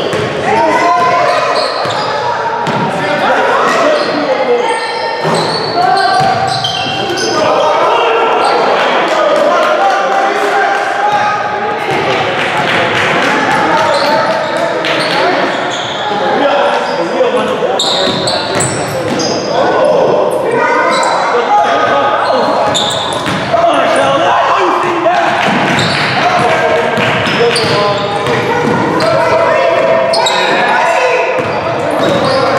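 A basketball being dribbled on a hardwood gym floor during a game, with players' voices calling out over it, the whole echoing in a large gymnasium.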